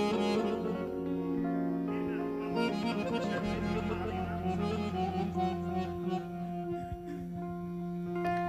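Instrumental music led by an accordion, with long held notes over a steady bass, playing the introduction to a song before the vocal comes in.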